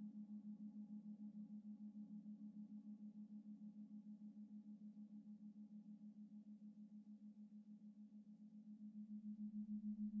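Faint, sustained low droning tone from the meditation music, wavering quickly and evenly in loudness like a singing-bowl hum, dipping slightly and then swelling near the end.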